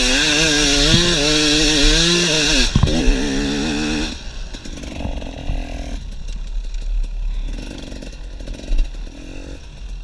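KTM EXC 250 two-stroke enduro engine revving hard, its pitch rising and falling, for about four seconds. It then drops to a much quieter low-throttle run, with a few short throttle blips.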